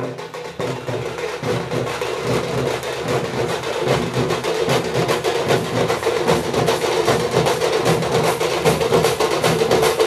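A large ensemble of folk drums playing together in a fast, dense, steady rhythm.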